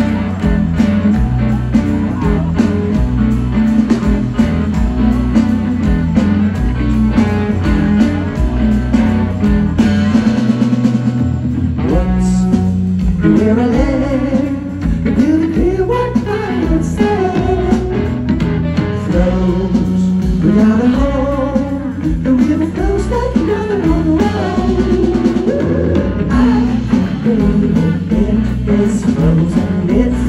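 Live rock band playing, with electric guitars, bass and drum kit, heard from within the audience on a handheld recording. Around ten seconds in the lowest bass thins briefly, then a lead line that bends up and down in pitch comes in over the band.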